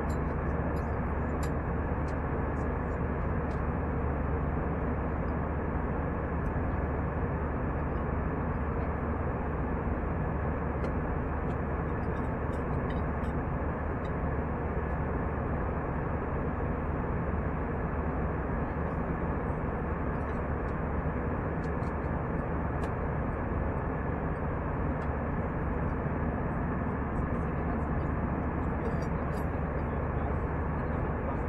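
Steady cabin noise of an Airbus A320 airliner in cruise: an even rush of engine and airflow over a low hum, heard from inside the cabin at a window seat by the wing.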